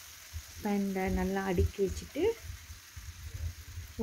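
Chicken pieces and potato wedges frying in a pan, with a faint, steady sizzle. A voice is heard briefly, starting about half a second in and stopping a little after the midpoint.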